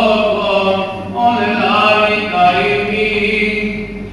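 A man's voice chanting in Greek Orthodox Byzantine style, in long held notes with slow melodic turns and a short breath about a second in.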